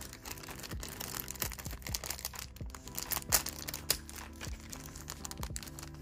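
Clear plastic packaging bags crinkling and rustling in short irregular crackles as small pieces are unwrapped, over faint steady background music.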